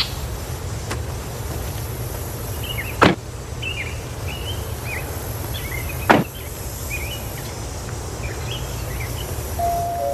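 Two car doors slam shut, about three seconds apart, over a steady low rumble. Birds chirp in short calls in between.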